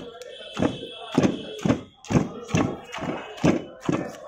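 Heavy metal pestle pounding a wet mash of jujubes in a cast-iron mortar: dull thuds about twice a second.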